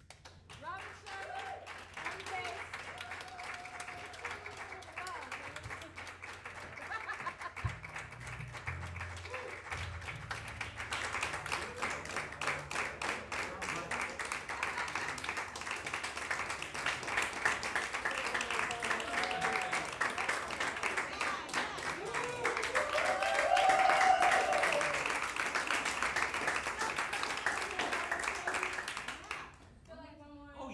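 Audience applauding and cheering for the band, growing fuller after about ten seconds, loudest near the end with a few shouts, then dying away just before the close.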